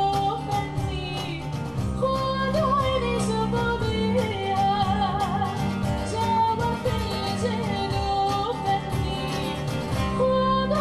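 Live ensemble music: a cajón struck with the hands keeps a steady beat under an ornamented melody with heavy vibrato and sustained low notes.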